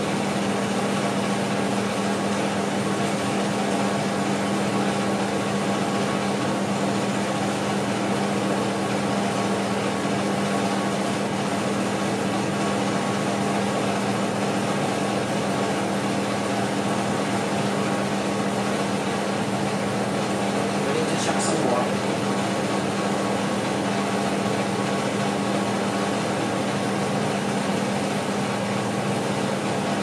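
A steady machine hum with a low held tone, of the kind a fan or air conditioner makes, runs without change. One short click sounds about twenty-one seconds in.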